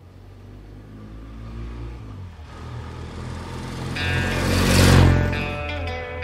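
A vehicle engine runs and grows steadily louder, building to a rushing swell that peaks about five seconds in and then falls away. Electric guitar music comes in about four seconds in.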